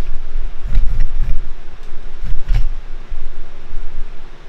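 Handling noise on the camera's microphone as the camera is picked up and lowered: low thumps and rumbles about a second in and again near the middle, with a few clicks.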